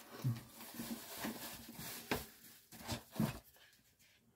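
Bubble wrap and cardboard rustling and crinkling as a wrapped item is pulled out of a shipping box, with a few soft bumps; it goes quiet near the end.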